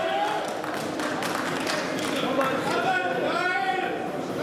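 Indistinct voices in a large, echoing hall: audience members calling out and talking, with a few short clicks early on.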